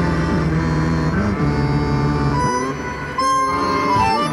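Improvised synthesizer music through a small portable speaker: held tones that slide in pitch over a low drone. Near the end the sound thins briefly, then a high held note comes in.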